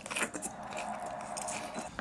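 People chewing mouthfuls of leafy green salad, with a few short crisp bites in the first half second.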